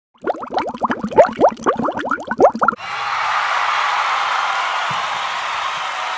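Intro sound effects over a title card: a quick, dense run of short plops that each rise in pitch, then, about three seconds in, a steady hiss that holds level.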